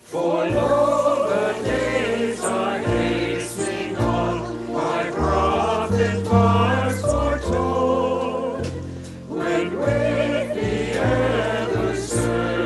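A choir singing a song over an accompaniment of held low notes that change in steps, starting suddenly at the very beginning.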